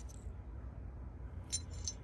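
Low steady background hum with a few faint light clicks about one and a half seconds in.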